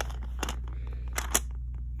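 A few light plastic clicks and taps from Lego-style bricks being handled on a baseplate, the sharpest about half a second in and twice just after a second, over a steady low hum.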